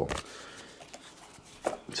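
Quiet handling sounds: paper rustling and a small cardboard knife box being opened on a wooden table, with a few light knocks.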